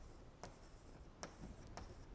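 Chalk writing on a blackboard, faint, with a few short sharp taps of the chalk against the board.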